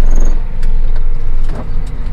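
John Deere tractor engine running steadily under way, heard from inside the cab as a low drone, with a few faint clicks.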